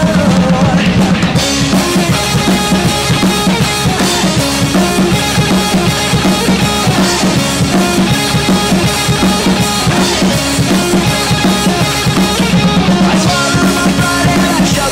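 Drum kit played at full volume with snare, bass drum and Meinl HCS cymbals, along to a recorded rock track with bass and guitar.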